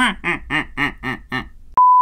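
A person laughing in a quick run of short "ha" syllables. Near the end a loud, steady TV test-card beep, one pure tone, cuts in suddenly.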